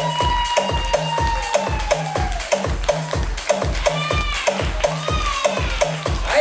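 Electronic dance track played over the sound system: a steady kick drum at about two beats a second with hi-hats, and a long held note that slides slightly down and fades over the first two seconds, then short gliding notes later on.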